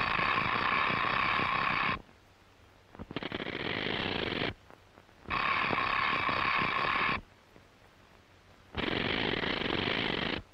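Telephone bell ringing in four long rings of a fast, rattling bell. Each ring lasts about one and a half to two seconds, with short pauses between them.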